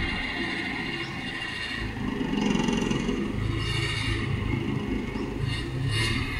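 Toyota sedan's engine running at low revs as the car reverses slowly, a steady low hum that grows a little louder about two seconds in.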